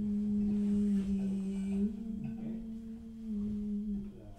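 A single low note held steadily, hummed by one voice. The pitch steps slightly up about halfway through and drops back a little near the end, and the note grows slightly quieter in the second half.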